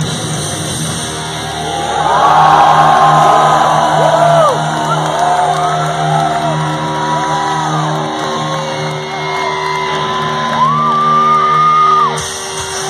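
Live thrash metal concert: the band holds a ringing chord on guitars and bass while the crowd shouts and whoops over it. The whooping swells about two seconds in, with many voices sliding up and down in pitch, and one high held note near the end.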